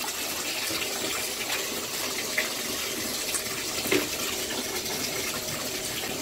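Bathtub tap running, water pouring steadily into a partly filled tub, with a few brief splashes along the way.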